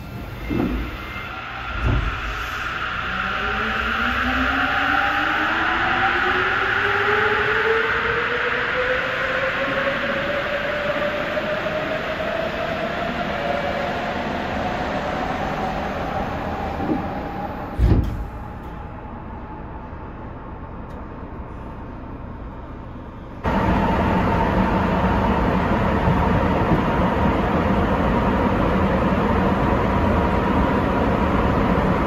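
Sapporo Municipal Subway car doors opening with a couple of thuds, then a long rising electric motor whine as a train accelerates. About 18 seconds in there is a sharp thud, and a few seconds later the sound changes abruptly to the steady running noise of the rubber-tyred subway car, with a faint steady tone.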